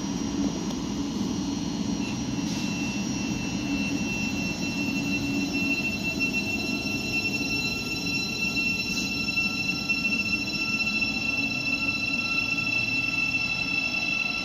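A Class 717 electric multiple-unit train running beside the platform: a steady rumble under several constant high-pitched electrical whines that set in about two seconds in.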